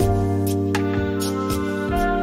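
Instrumental background music: held chords with a light, regular percussive beat, the harmony changing at the start.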